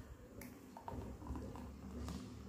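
A steel jug tipped over a tumbler, with one sharp click and a few light ticks, then a faint low pouring sound as a thick blended drink starts to run into the glass near the end.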